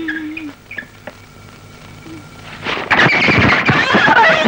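A brief squeaky tone and a few light clicks, then from about two and a half seconds in a man yells and several people shout at once, loud and overlapping.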